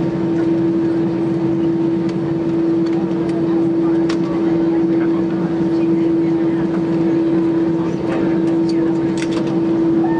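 Airbus A320 cabin noise during a slow taxi: the engines at idle and the air system make a steady rush with one strong, constant hum.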